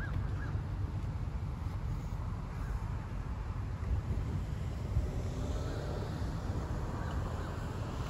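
Roadside traffic ambience: a steady low rumble of road traffic with wind buffeting the microphone, and a faint pitched sound about five seconds in.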